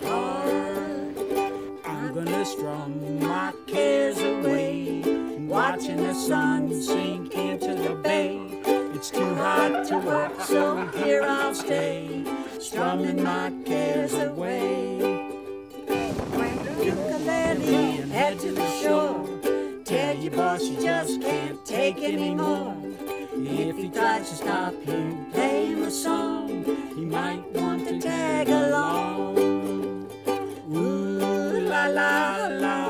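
Ukulele strummed and picked in an easy, upbeat tune: an instrumental stretch of a light folk song, with a busier strummed passage just past the middle.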